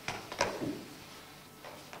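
Sheets of paper being handled and set down on a table. Several short crisp rustles come in the first second, and a couple more come near the end.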